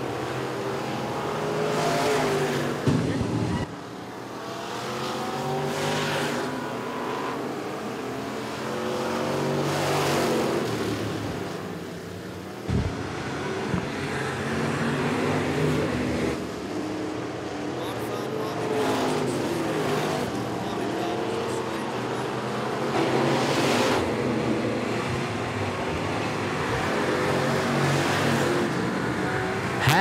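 Street stock race cars running flat out on a dirt oval, the engine sound swelling and fading as the cars pass again and again, about every four seconds.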